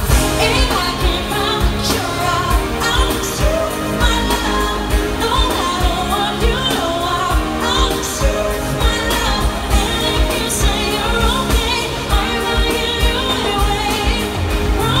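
Live pop song through an arena sound system, heard from the crowd: a steady dance beat with singing over it.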